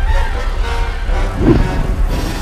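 Film soundtrack: march music over a steady deep rumble, with a brief swell about one and a half seconds in.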